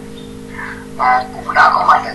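A person's voice, heard without clear words, over a steady low hum; the voice comes in about a second in, after a quieter stretch.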